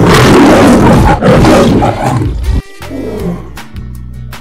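A loud lion roar sound effect, lasting about two and a half seconds and cutting off abruptly, over background music.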